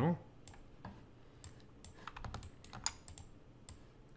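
Light, scattered clicking of a computer keyboard and mouse: about a dozen short clicks at uneven intervals.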